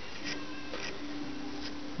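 Light scratching of scissor tips picking out the yarn fibres of a fly, with a faint steady hum through most of it.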